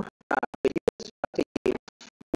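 Garbled, stuttering audio of a voice chopped into rapid fragments, several a second, with sharp dropouts to silence between them, so that no words come through.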